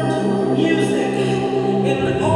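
Euphonium holding a long, steady low note, with other sustained tones sounding alongside it.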